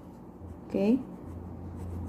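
Orange wax crayon rubbing on a paper worksheet in repeated short strokes as a graph square is coloured in.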